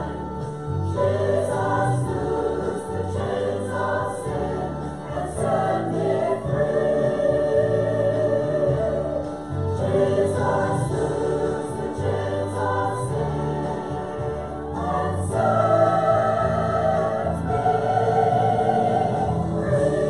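A mixed church choir of men and women singing a hymn together in held, sustained notes.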